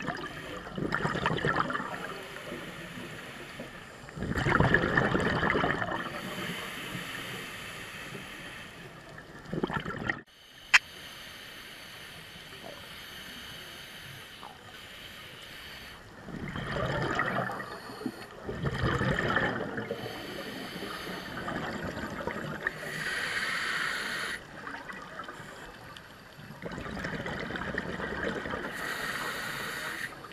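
Scuba regulator exhaust bubbling, heard underwater through a GoPro's waterproof housing: a surge of bubbles every few seconds with each exhale, over a low hiss. One sharp click about eleven seconds in.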